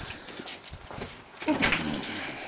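A dog sniffing and moving about, with light clicks of claws on hard ground and a short vocal sound about a second and a half in.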